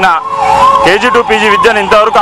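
A siren wailing behind a man's speech, its pitch rising and falling in slow repeated sweeps.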